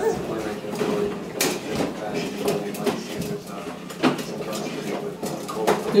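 Plastic toddler push-walker toy rolling over a hardwood floor, its wheels and parts rattling and clattering, with a few sharp clicks now and then.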